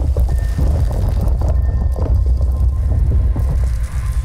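Sound-effect rumble with a fast, irregular run of knocks, a row of walls toppling like dominoes, over intro music; a deep low rumble runs beneath throughout.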